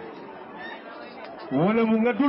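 A lull with faint background chatter from the people around, then a man's voice starts up loudly about one and a half seconds in.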